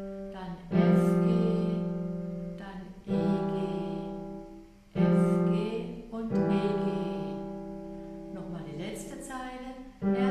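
Digital piano playing slow left-hand two-note chords with the thumb held on G, the lower note changing. Four chords are struck, each left to ring and fade for a full bar of three beats.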